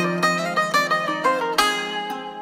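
Instrumental passage of a kizomba remix: a quick plucked-string melody, about four notes a second, over a held low note, with no vocals.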